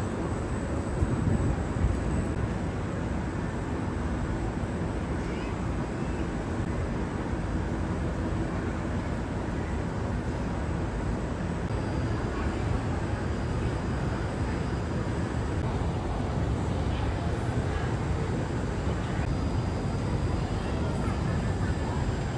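Indoor shopping mall ambience: a steady low rumble with faint, indistinct voices of people in the background.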